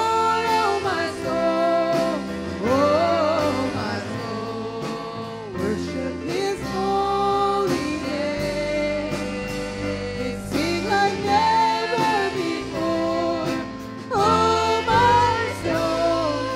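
Live gospel worship song: a woman sings the lead melody in held, wavering notes over keyboard and a backing band.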